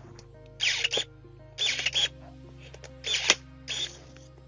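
Battery pruning shears (GeoTech MS-30) with their electric motor closing the blade on a branch of about 30 mm, the shears' maximum: four short whirring strokes of about half a second each, with a sharp click just after three seconds. The branch is too thick for one bite, so the blade takes repeated cuts.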